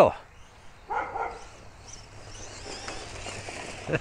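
Redcat Wendigo RC rock racer's sensorless brushless motor whining and its tyres running over grass at full speed on a 3S LiPo, getting louder over the last two seconds as the truck comes closer. A brief voice-like call about a second in.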